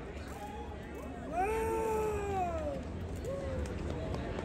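A single high, drawn-out vocal whoop from someone in the audience, rising then falling over about a second and a half, followed by a short second call, over low crowd rumble in a break between songs.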